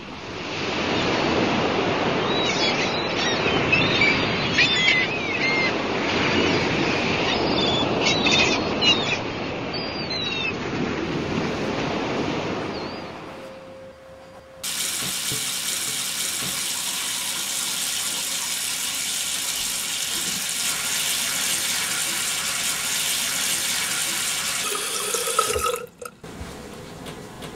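A tap running steadily into a bathroom sink for the second half, an even hiss of water that starts abruptly. Before it, a steady rush of beach noise with faint high chirps over it.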